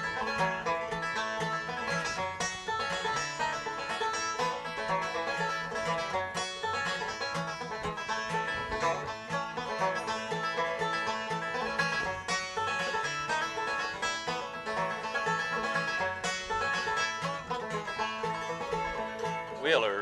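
Instrumental break of a bluegrass song: a banjo picking a fast run of notes over an acoustic guitar, with no singing.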